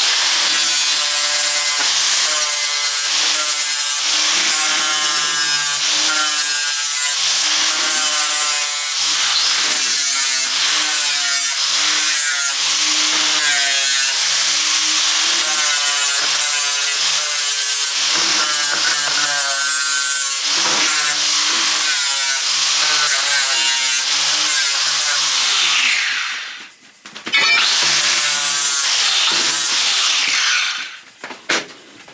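Handheld angle grinder grinding a steel frame tube, the motor's pitch dipping again and again as the disc bites into the metal. It is weld prep: grinding the paint off and dressing the tube so there is plenty to weld. The grinder winds down briefly about 26 seconds in, then runs again.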